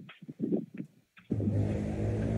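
A few short muffled knocks, then about a second and a half in a steady low motor hum starts suddenly and keeps running, like a vehicle engine.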